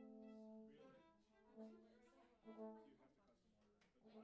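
A bowed string instrument played faintly: a few short, separate notes, with a small click near the end.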